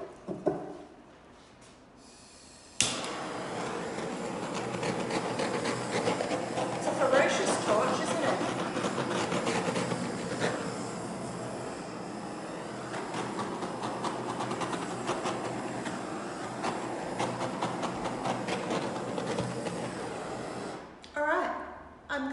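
A single tap about half a second in, then about three seconds in a handheld torch flame starts suddenly and hisses steadily for about eighteen seconds before cutting off near the end. The torch is being passed over a wet acrylic pour to bring cells up through the paint.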